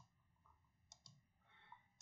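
Near silence with a few faint computer mouse clicks: one at the start, then two in quick succession about a second in.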